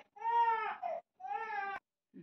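An infant crying in two short, high-pitched wails, the second about a second after the first.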